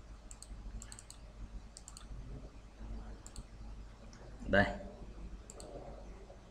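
Computer mouse clicking, a scattering of faint single and double clicks spread through a few seconds.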